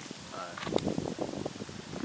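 Rustling and scattered light clicks, with wind on the microphone.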